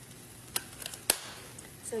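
A few light clicks of fingers and blueberries touching a nonstick frying pan as the berries are set down, the loudest about a second in.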